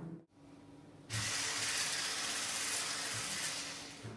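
Hand-held electric whisk running in a stainless-steel bowl, whipping double cream toward thickness; a steady hissing noise that starts about a second in.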